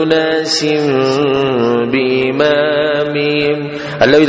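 A man's voice chanting Arabic words in a drawn-out melodic recitation, holding long notes and sliding between pitches.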